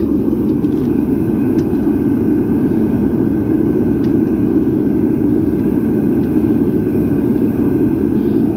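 Gas burner of a small kaowool-lined foundry running at full heat, a steady, unbroken rushing noise, while a charge of brass and aluminum melts in the crucible.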